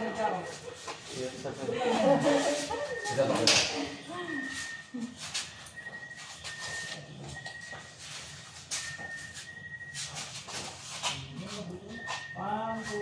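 People's voices talking over one another for the first few seconds, then a quieter stretch of scattered clicks and a faint high steady tone that keeps breaking off and returning.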